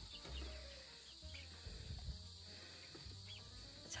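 Faint ambience: a steady high drone of insects with a few soft, short peeps from young chickens.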